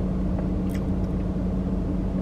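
Steady low hum of the parked SUV running, heard from inside its closed cabin, with a few faint ticks.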